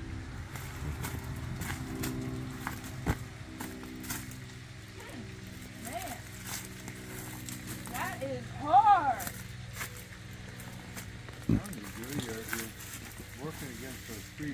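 Shovel digging into mulch and soil, with two sharp knocks of the blade about three seconds and eleven seconds in, over a steady low hum and faint voices.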